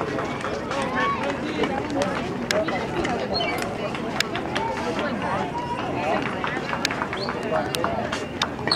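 Indistinct chatter of several people talking at once, with no clear words, and scattered sharp clicks throughout.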